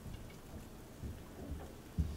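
Faint lecture-hall room noise with a few soft, low thumps.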